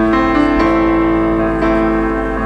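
Slow background piano music, sustained notes with a new note or chord struck about once a second.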